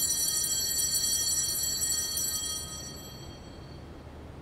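Altar bell struck once, ringing with several clear high tones that fade away over about three seconds. It marks the elevation of the host at the consecration.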